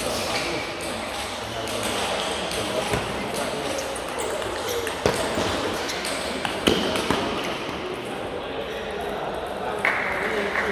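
Table tennis ball clicking sharply off the bats and table in a rally, a few clicks about halfway through and again near the end, over a steady babble of voices in a large sports hall.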